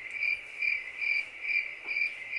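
Cricket chirping sound effect, a steady high chirp repeating about twice a second, edited in over a silent pause as the classic 'awkward silence' gag.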